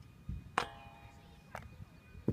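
A frisbee striking the metal goalpost crossbar: one sharp knock that rings briefly about half a second in, then a fainter knock about a second later.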